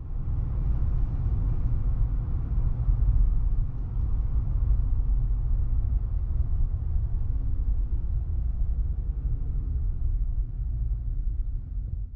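Steady low rumble of a 2018 Jeep Wrangler JL Unlimited Rubicon being driven, heard from inside the cabin: engine and road noise, with no words.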